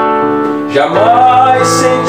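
Electronic keyboard playing sustained chords, with a new chord struck at the start and another just under a second in.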